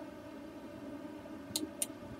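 Faint steady hum of room noise, with two sharp clicks close together near the end.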